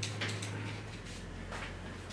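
Sponge roller rolling acrylic paint across a canvas: a soft rasp with a couple of faint clicks at the start, fading after about half a second, over a low steady hum.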